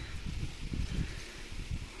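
Light wind buffeting the microphone: an uneven low rumble in gusts over a faint steady outdoor hiss.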